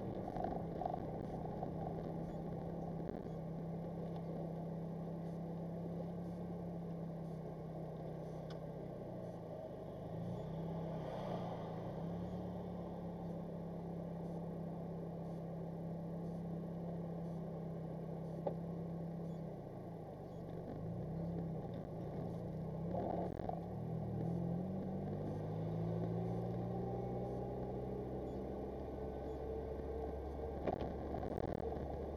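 Car engine heard from inside the cabin, running at a low steady speed with a couple of brief dips in pitch, then rising in pitch over the last few seconds as the car pulls away and accelerates. One sharp click about midway.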